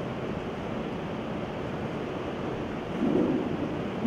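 Steady, even hiss of room noise in a large hall, with a faint voice murmuring briefly near the end.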